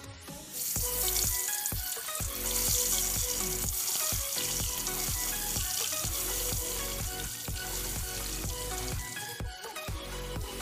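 Peeled boiled eggs frying in hot oil in a kadai: the oil sizzles and bubbles, starting suddenly about half a second in as the first egg goes in, strongest over the next few seconds and then settling to a steady sizzle. Background music with a steady beat plays throughout.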